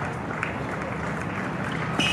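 Tennis court ambience between points: a low steady hum with a faint murmur of spectators. A single soft tap about half a second in fits a tennis ball being bounced before the serve.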